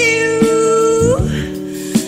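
Jazz vocal recording with band accompaniment: the singer holds one long steady note for about a second, then slides up in pitch.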